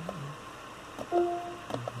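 Quiet car-cabin room tone with two brief soft voice sounds from a man: a short falling murmur near the start and a held "um" a little past the middle.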